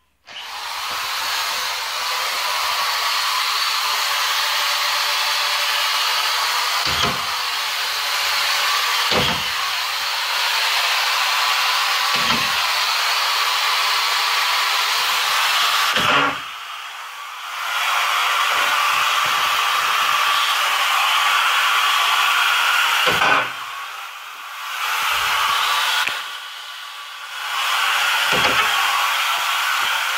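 A machine starts up and keeps running with a loud, steady whoosh like a blower. It drops off briefly three times, and a few short knocks come through it.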